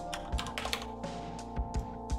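A few computer keyboard clicks in small clusters, over background music with steady held tones.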